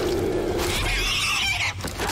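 A harsh, animal-like shrieking cry from a horror film scene. It rises higher and wavers about a second in, then breaks off shortly before the end.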